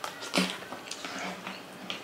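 Close-miked eating by hand: a loud wet smack as a mouthful goes in, with a short low hummed "mm", followed by softer chewing and lip clicks.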